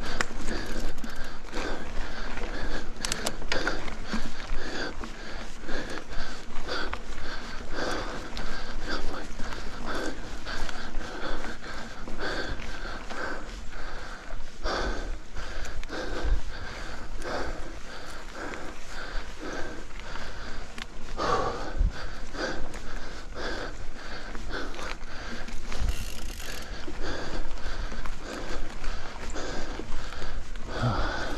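Mountain biker panting hard on a steep uphill climb, heavy breaths coming in a steady run about once a second, with mechanical clicking and rattling from the bike.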